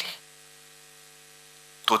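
Faint steady electrical mains hum from the public-address system, heard in a gap between a man's words. His voice trails off at the start and comes back near the end.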